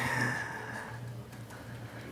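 Quiet room tone with a steady low hum, and a faint tone that slides down and fades in the first second.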